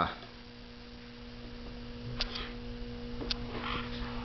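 Steady electrical mains hum, with two faint clicks about two and three seconds in.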